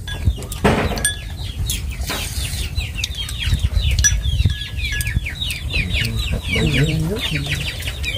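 Poultry calling: many quick, high peeps falling in pitch and overlapping one another, starting about two seconds in, over a low rumble, with a short voice near the end.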